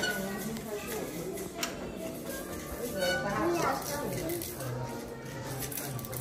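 Indistinct voices talking in a room, with a single light knock about one and a half seconds in.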